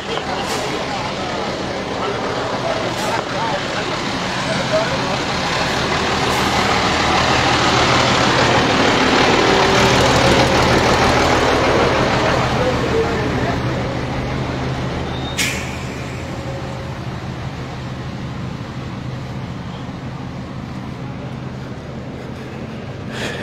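A large truck's engine running steadily, growing louder toward the middle and fading again, with one sharp knock about fifteen seconds in.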